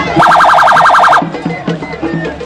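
An electronic siren sounds for about a second in a fast warble of rising sweeps, about ten a second, then stops. Music with a drum beat plays under it throughout.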